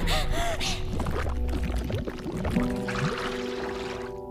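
Water splashing and sloshing around a girl struggling to stay afloat, with short gasping, whimpering sobs in the first second. Soft sustained background music tones come in about halfway through.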